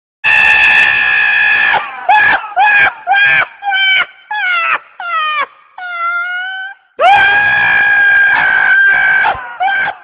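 Donkey braying: a long held call, then a run of about eight short calls that slide down in pitch, then a second long call about seven seconds in, followed by more short ones.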